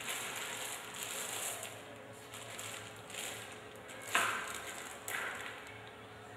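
Soft rustling and handling noise from hands threading small beads onto monofilament, in several short bursts, with a sharper click about four seconds in and another about a second later.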